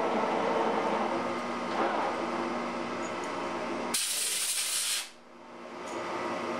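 Metal lathe running steadily as a single-point threading tool takes a light finishing pass on a rifle barrel's threaded tenon. About four seconds in comes a loud hiss lasting about a second, then the sound drops away sharply.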